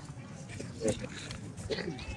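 Indistinct background voices from a large outdoor gathering, with a short, louder voice just under a second in.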